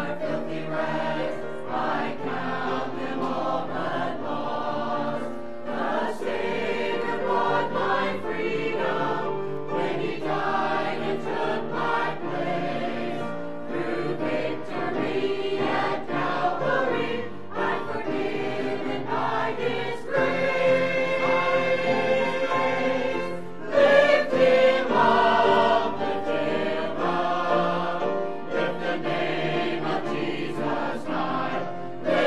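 Mixed church choir singing a piece from an Easter cantata, in chords that move every second or so. About two-thirds of the way through they hold one long chord, followed by the loudest swell.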